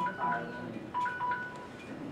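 A short electronic tune of plain, steady beeping tones stepping between two pitches, under faint murmuring voices.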